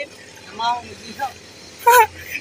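Short snatches of people talking, quieter than the main speech around it, over a low steady background hum; a louder voice cuts in near the end.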